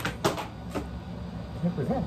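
A few short, sharp knocks in the first second, followed by a brief bit of voice near the end.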